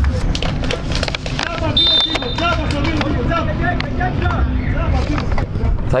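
Footballers' voices shouting and calling across an open pitch after a goal, over a steady low rumble. A brief high whistle sounds about two seconds in.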